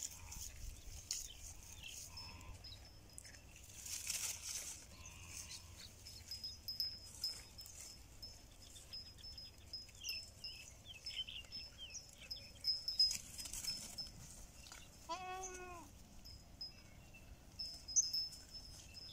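Goats at pasture, mostly quiet apart from faint rustles and clicks, with one short goat bleat about three-quarters of the way through.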